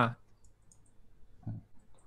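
Faint clicks of a computer mouse as a chess piece is moved on an online board, after a brief spoken "haan" at the start. A short low voice sound comes about one and a half seconds in.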